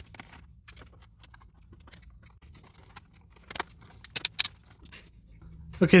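Light clicks and small rattles of plastic laptop case parts being handled as an iBook G3 clamshell's top case is lifted off and turned over, with a quick run of sharper clicks about three and a half to four and a half seconds in.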